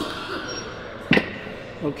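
A person shifting back on a padded weight bench, with rustling and one sharp thump about a second in.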